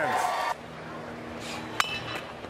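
The tail of a voice over the ballpark public-address system, then the steady background of the stadium crowd. Near the end there is a single sharp clink with a brief ring.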